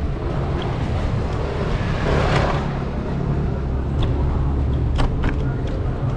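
City street ambience: a steady low rumble of traffic, with a vehicle passing close by about two seconds in, and a few sharp clicks later on.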